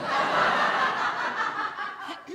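Studio audience laughing together, breaking out at once and slowly dying away toward the end.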